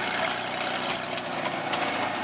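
Drag race car engines idling steadily, the nearest a 2000 Ford Mustang's 3.8-litre V6.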